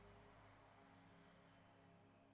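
A woman exhaling slowly through clenched teeth: a long, steady "sss" hiss that sinks slightly in pitch. It is the S-exhale of a yogic breathing exercise.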